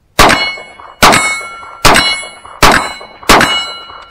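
Five rapid shots from an Emperor Dragon 12-gauge shotgun firing No. 4 buckshot, about 0.8 s apart, each followed by a metallic ringing tone that fades. The gun cycles the buckshot shot after shot.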